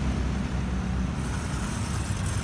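Street traffic: car engines running on the road, a steady low rumble.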